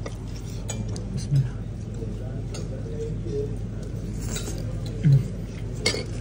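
Restaurant background: a steady low hum under distant chatter of other diners, with a few short clinks of cutlery and plates.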